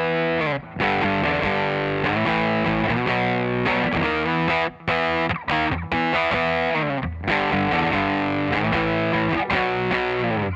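Distorted electric guitar, a Les Paul-style solid-body, strumming power chords and sliding them up and down the neck, with short stops between chord groups.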